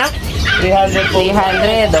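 Men talking, with a dog barking in the background.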